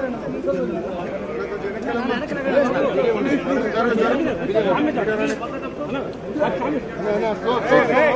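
Several people talking over one another in a crowd, a steady chatter of overlapping voices with no single clear speaker.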